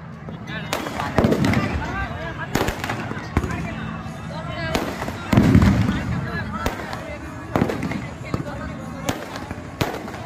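Fireworks bursting in a string of sharp bangs, roughly one a second, the loudest a little past halfway through.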